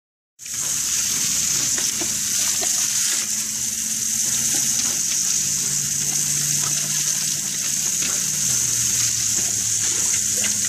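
Garden hose spray hissing steadily onto wet concrete paving, spattering as a dog snaps at the stream. The hiss starts about half a second in.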